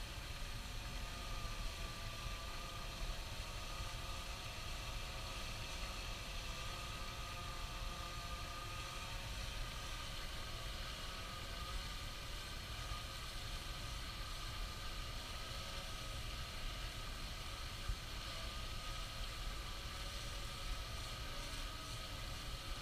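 Steady background rumble and hiss with no distinct events.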